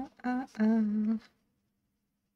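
A woman humming a tune in held notes, which stops a little past halfway through.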